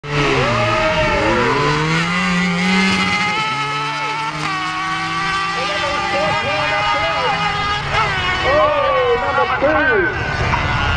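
Kawasaki motorcycle engine in a dirt drag buggy running flat out on a launch, its pitch climbing for about three seconds, dropping briefly at a gear change, then holding high as it runs down the track.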